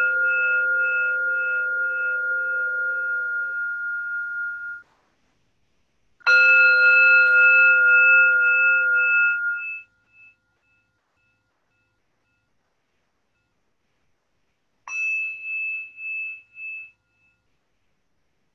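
Meditation bell struck three times, the strokes about six and nine seconds apart. Each stroke rings with a steady clear tone for a few seconds and then cuts off suddenly; the third is softer, with a pulsing waver as it fades.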